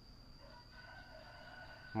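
A faint, drawn-out animal call lasting about a second and a half, starting about half a second in, over a thin steady high-pitched whine.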